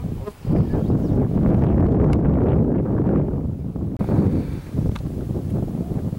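Wind buffeting the microphone, a heavy low rumble that starts suddenly about half a second in and keeps on gusting.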